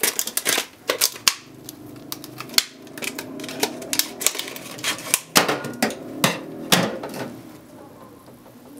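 Plastic bottle of partly frozen cola crackling and clicking sharply and irregularly as it is gripped and handled, in clusters at the start and again later on.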